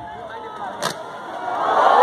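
A single sharp pyrotechnic bang a little under a second in, then a large crowd starting to cheer, growing louder toward the end.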